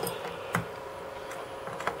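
Light clicks and ticks of a multimeter test probe being moved and set into a test-point jack on a metal amplifier chassis: one sharp click about half a second in, then a few fainter ticks, over a steady faint background hum.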